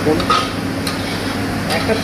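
Spatula stirring and scraping through thick mustard gravy in a wok, with two short sharp scrapes about a second in and near the end. Under it runs a steady low hum.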